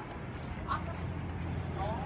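Low, steady engine hum of an SUV rolling slowly past close by, growing slightly louder.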